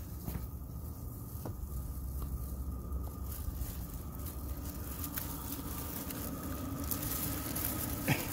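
Thin silver foil film of a hot-air balloon envelope crinkling and rustling as it is handled, with a few scattered crackles and more rustle near the end, over a steady low rumble.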